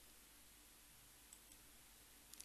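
Near silence: faint steady room-tone hiss, with two very faint clicks a little past the middle.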